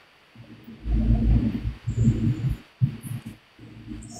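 Phone being handled close to its microphone: muffled low rumbling and rustling in a few bursts over about two seconds.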